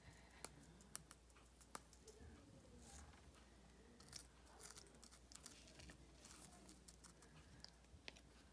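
Very faint small clicks as a plastic glitter-glue tube and its cap are handled, then soft scratching of a pencil tip spreading glitter glue on paper.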